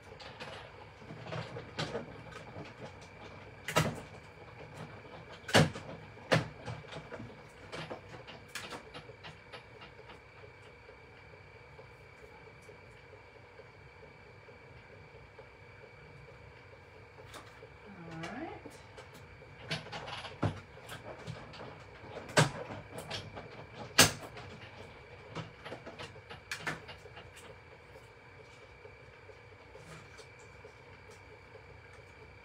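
Scattered clicks and a few sharp knocks of crafting tools and materials being handled away from the microphone, over a faint steady hum.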